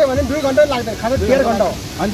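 A man talking, over a steady hissing background noise.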